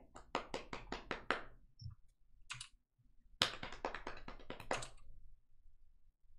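Keys of a computer keyboard being typed on: a run of about eight quick clicky keystrokes in the first second and a faster run of about a dozen halfway through.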